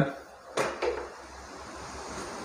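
Two light metal clicks about a quarter-second apart as the lid settles on an aluminium cooking pot on the gas stove, followed by a low steady background.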